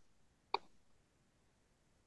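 Near silence in a pause between spoken sentences, broken by one short faint click about half a second in.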